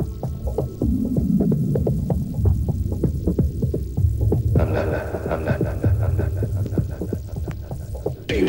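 Electronic dance music in a DJ mix: a steady, evenly spaced beat over deep bass. A higher layer of held synth tones comes in about halfway through.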